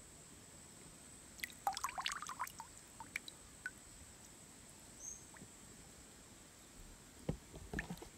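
Small splashes and drips of shallow stream water as a hand moves pebbles under the surface: a quick cluster about a second and a half in, a few single drips after, and more splashes near the end.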